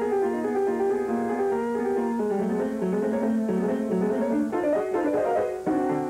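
Solo piano, a Yamaha, played in a fast, dense run of notes, with a loud accented chord struck near the end.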